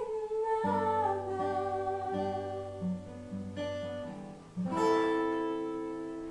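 Cutaway acoustic guitar picked under a held sung note that slides down in pitch and stops. Near the end one last chord is strummed and left to ring out, fading, as the song ends.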